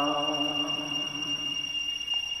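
A man's sustained, chant-like reading voice trails off in the first half second, leaving a pause with a faint, steady high-pitched electronic whine over low hiss.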